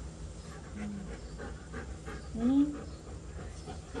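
Golden retriever panting in a quick, even rhythm. A little over halfway through comes a short vocal sound that rises and then falls in pitch, the loudest moment.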